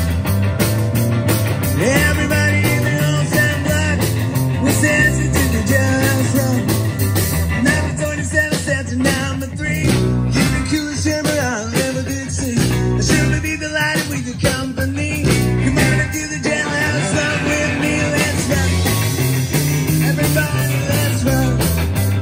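Live rock band playing: electric guitar over electric bass and a drum kit.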